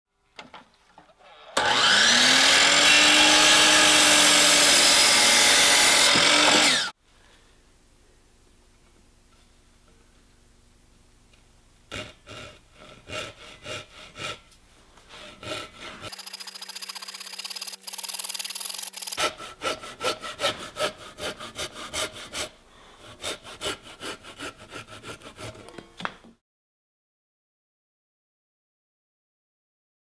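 A power miter saw spins up and cuts through a board, running loud for about five seconds and then stopping abruptly. Later a handsaw cuts through wood in two runs of quick, even strokes, about three a second.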